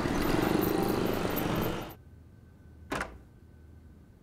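Street traffic with auto-rickshaw and motorbike engines running, loud for about two seconds and then cut off. It is followed about three seconds in by a single short whoosh.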